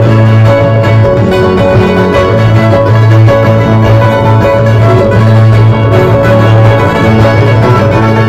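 Andean string band music, guitars with violin, playing a dance tune without a break, over a heavy steady bass.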